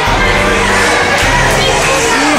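Background music playing with a crowd of children cheering and shouting over it.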